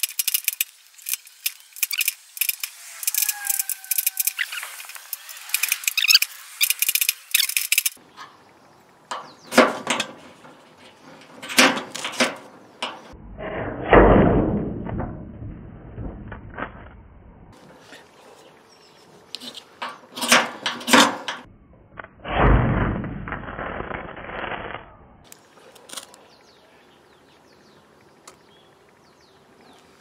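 Flint fire-starter rod scraped again and again with a metal striker to throw sparks onto toilet paper: a run of short rasping scrapes and sharp clicks, needing many strikes before the paper catches. Two longer rushing noises come about a third and two thirds of the way in.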